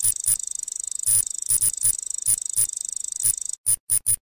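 Electronic sound effects for an animated loading screen: an irregular run of short, sharp digital blips over a fast, high-pitched ticking chatter. The chatter cuts off about three and a half seconds in, followed by two more blips.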